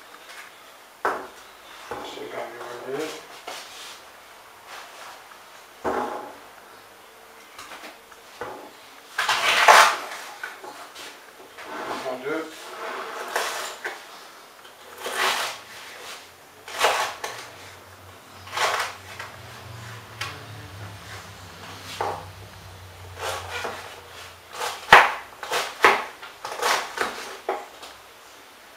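Chef's knife cutting a raw fennel bulb on a wooden chopping board: irregular knocks of the blade striking the wood, some with a crunch as it goes through the bulb, coming faster near the end as the fennel is diced.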